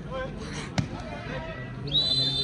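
Players' and onlookers' voices, with one sharp slap of a volleyball being struck a little under a second in. A shrill referee's whistle starts right at the end.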